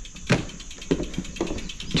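A few short knocks and thumps, footsteps on the wooden plank deck of a covered bridge; the sharpest click comes about a third of a second in.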